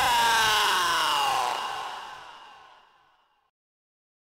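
The closing synth chord of a jumpstyle track, with the kick drum gone. Its notes sink slowly in pitch as it fades out, dying away about three seconds in.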